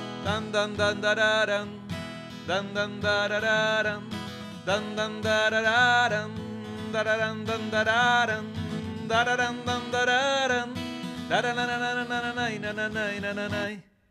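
Acoustic guitar music with a wavering melody line over sustained chords, cutting off suddenly near the end.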